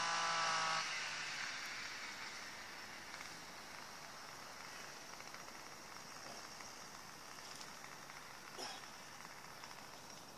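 A steady, even humming tone stops under a second in, leaving faint open-air background hiss with no clear event.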